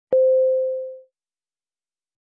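A single pure mid-pitched tone, struck sharply just after the start and fading away within about a second.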